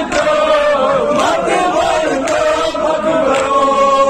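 A crowd of men chanting a Kashmiri noha, a Shia lament, together in a sustained sung line. Strikes that are likely chest-beating (matam) land about once a second.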